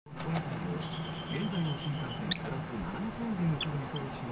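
Pet lovebirds calling: a rapid, pulsed high chatter lasting over a second, then one loud sharp chirp about halfway through and a shorter chirp near the end. A low voice talks in the background.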